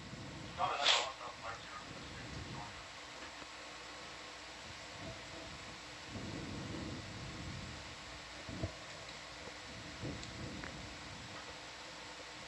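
Faint, indistinct voices over a steady hiss, with one brief louder voice sound about a second in.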